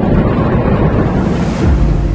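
Bus running on a mountain road, heard from inside: a steady low rumble of engine and road noise with wind buffeting the microphone. Near the end a brief rush of noise, then the sound cuts to background music.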